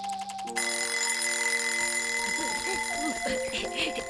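An electric school bell rings: a fast rattle at first, then about half a second in it gets louder into steady ringing that carries on. Cartoon background music with sliding notes plays over it.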